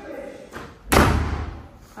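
Interior door slammed shut once, about a second in: a single sharp thud that dies away over about half a second.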